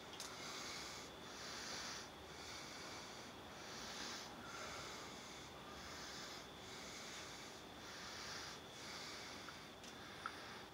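Faint breathing close to the microphone, soft breaths swelling and fading about once a second.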